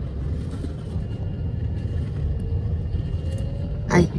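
Car driving, heard from inside the cabin: a steady low rumble of engine and road noise, with a faint whine slowly rising in pitch in the second half.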